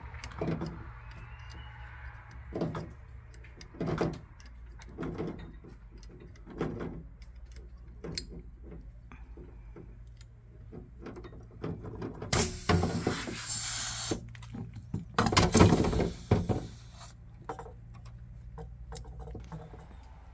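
Small metal clicks and knocks of brass air-line fittings and valves being handled and screwed together on an air-bag suspension line, over a steady low hum. A little past halfway come two bursts of hissing compressed air, each a second or two long, the loudest sounds.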